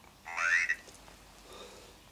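Ovilus III paranormal word generator speaking one short word in its robotic synthesized voice, about half a second long and rising in pitch. The word is the one just shown on its screen, 'wide'.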